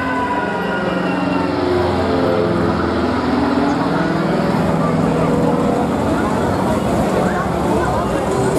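Thrill ride's drive motors whining as the arm swings and the gondola wheel turns: a pitched tone that falls over the first two seconds, then holds roughly steady, over fairground noise.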